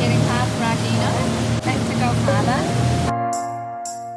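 Motorboat running at cruising speed, a steady engine note under the rush of wake water and wind, with music over it. About three seconds in, the boat sound cuts off suddenly, leaving only the music.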